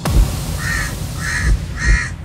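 Produced video-intro sting: music with deep low hits and three short, evenly spaced bursts about 0.6 s apart over a continuous rumble.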